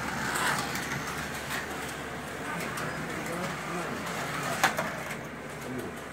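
Carrera Digital 132 slot cars running on the track, their small electric motors whirring as they pass, with indistinct voices in the background and one sharp click about four and a half seconds in.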